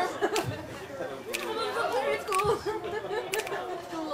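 Several people chattering and laughing at once, with a sharp click about once a second and a low thud every two seconds beneath the voices.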